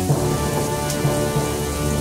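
Storm sound effect for a rain of ice: steady heavy rain with a low thunder rumble.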